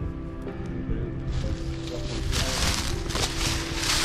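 Background music with steady held notes. About a second in, a rustling crunch of footsteps through dry fallen leaves joins it and grows louder, becoming the loudest sound from about halfway through.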